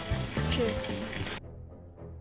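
A single spoken word, "sure", over outdoor background noise, then about 1.4 s in the sound cuts abruptly to quiet background music.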